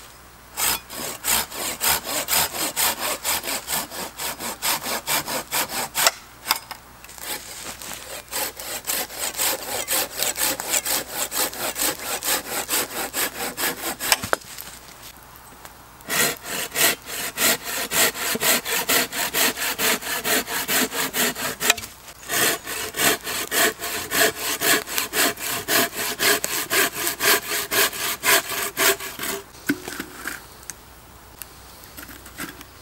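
Curved hand saw cutting through a birch log in quick back-and-forth strokes, about three a second. The sawing stops briefly about six seconds in, pauses for longer around the middle, and stops briefly again a little past two-thirds of the way through.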